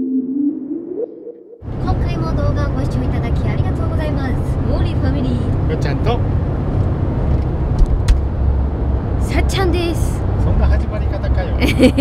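Steady low engine and road rumble inside the cab of a 6th-generation Toyota HiAce diesel van on the move, starting about a second and a half in, with voices talking and laughing over it. A chime sound effect that dips and rises in pitch fades out just before.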